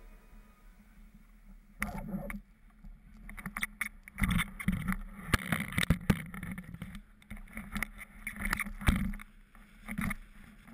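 Knocks and rubbing from a camera on a pole being moved around, with gusts of wind on its microphone; the first two seconds or so are fairly quiet.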